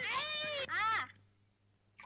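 Children's high-pitched voices in two drawn-out shouts that rise and fall in pitch as they strain together on a well rope. Near silence follows for the second half.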